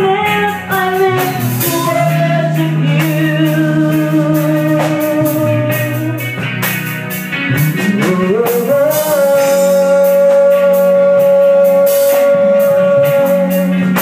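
A woman singing solo into a microphone over a live band with drums. A bit past halfway she slides up into one long high note and holds it for about five seconds.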